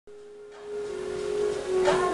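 The opening of a music track: a sustained whistle-like tone that steps slightly down in pitch, with a hiss swelling in behind it, and a short knock near the end.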